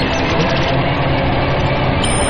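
Dense, steady noise drone with a low rumble, part of an experimental electronic soundtrack.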